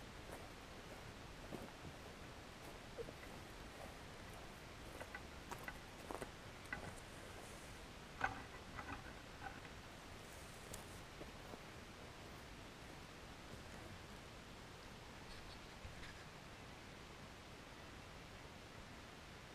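Faint outdoor background hiss with a scattered handful of soft clicks and rustles, most of them between about five and nine seconds in.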